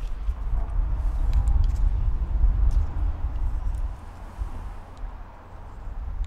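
Wind buffeting the microphone: a low rumble that rises and falls in gusts and eases after about four seconds. Occasional light clicks come from a small wooden puzzle being handled.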